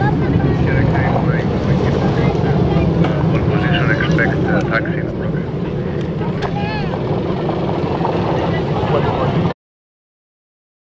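Low, steady rumble of a departing Airbus A321's twin jet engines, easing off a little after the middle, with spectators' voices chatting over it. The sound cuts off suddenly near the end.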